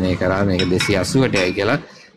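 A man talking in Sinhala, with a light ringing clink about a second in.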